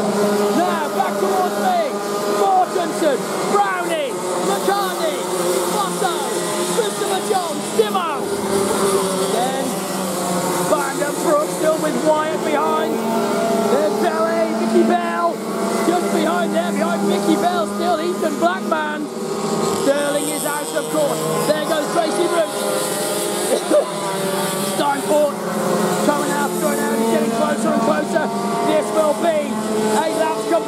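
A field of TAG racing karts' 125cc two-stroke engines running around the circuit, many engines overlapping and rising and falling in pitch as the drivers accelerate out of corners and back off for the next.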